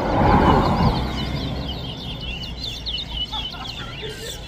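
Caged towa-towa (chestnut-bellied seed finch) singing a run of quick, high chirping notes, repeated again and again. A loud rushing noise swells in the first second and is the loudest sound.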